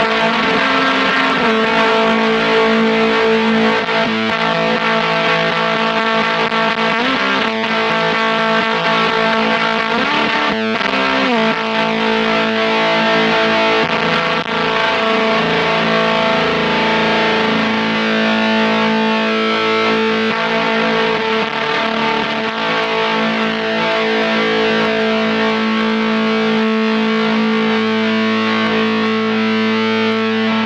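Electric guitar played through the Chase Bliss Audio / ZVEX Bliss Factory, a two-germanium-transistor fuzz pedal, giving thick fuzzed notes and chords held long and sustaining, changing every few seconds.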